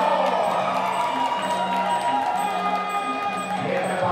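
Muay Thai ringside fight music: a reedy Thai oboe melody with long held notes over a steady low drone and drum, and small hand cymbals clinking about twice a second. A crowd shouts over it.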